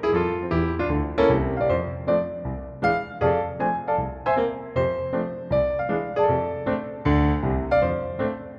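Piano playing stride-style jazz in F from a MIDI file. The left hand alternates low bass octaves with mid-range chords in a steady bouncing beat, under a right-hand melody in chords and octaves.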